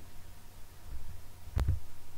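A pause filled by a low steady hum, broken by one sharp thump about one and a half seconds in.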